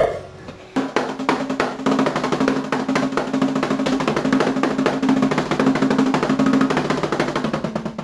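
Electronic drum kit played fast: a dense run of rapid hits starts about a second in and keeps going, with a steady low note underneath, then stops at the end.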